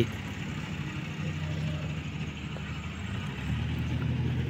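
A motor vehicle's engine running steadily at low revs, a low hum that grows a little louder near the end.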